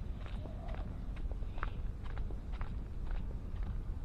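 Footsteps of someone walking at an even pace on a stone-paved path, about two steps a second, each a short sharp tap, over a steady low rumble.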